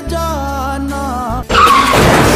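A singing voice over music with a low drone; about one and a half seconds in, the music cuts off and a loud tyre screech with a rush of noise takes over: a truck skidding under hard braking.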